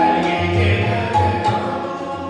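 Sikh kirtan: a singer performing a classical raag over steady held harmonium notes, with a tabla keeping a low repeated beat.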